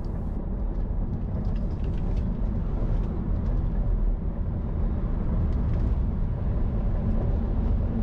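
Tyre and road noise inside the cabin of an electric Tesla Model 3 driving at speed on a track: a steady low rumble with no engine note.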